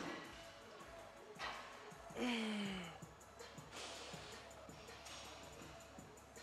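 A man breathing hard while doing heavy barbell back squats, with forceful breaths about every second and a half and a short falling grunt of effort a little over two seconds in. Music plays in the background.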